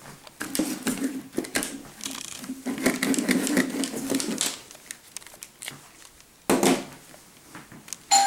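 Plastic headphones being picked up and handled on a wooden table: clicks, rattles and rubbing, busiest in the first half, with a louder bump about six and a half seconds in.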